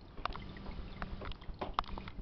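A few irregular sharp clicks, four or so in two seconds, over a steady low hum.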